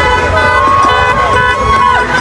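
Car horns honking in long, steady blasts over slow-moving traffic, with people shouting.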